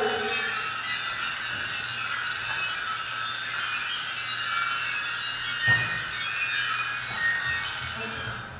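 Chimes tinkling continuously, many small high ringing tones overlapping, with one soft thump a little before six seconds in.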